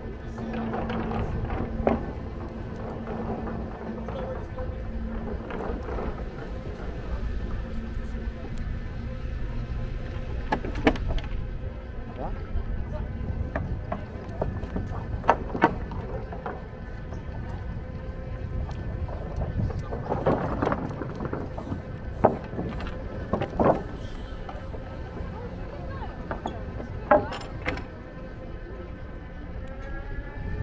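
Wind rumbling on the microphone as an electric scooter rolls over a wooden boardwalk, with scattered sharp knocks from the wheels on the planks.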